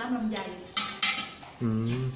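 Two sharp clinks about a quarter of a second apart: a crockery lid knocking against the glass drink jars.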